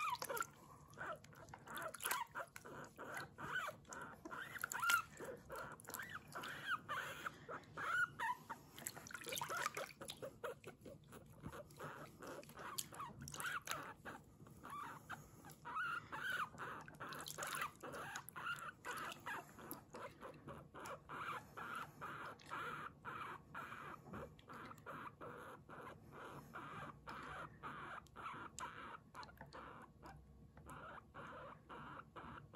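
Guinea pig squeaking while it is bathed: a steady run of short, repeated "puipui" squeaks, about two or three a second.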